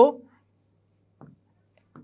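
Marker pen writing on a whiteboard: two short, faint strokes, one a little over a second in and one near the end.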